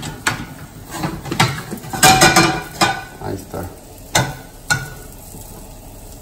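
Cookware knocking and clinking on a gas stovetop, a string of separate sharp knocks with the busiest cluster about two seconds in, over a faint sizzle of an omelette frying in the pan.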